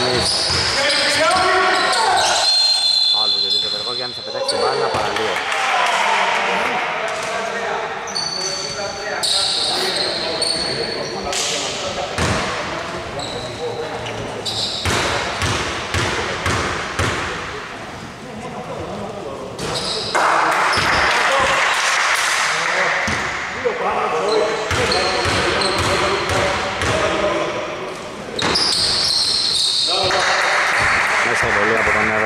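Indoor basketball game: a basketball bouncing on a hardwood court, short high sneaker squeaks, and players' voices, all echoing in a large hall.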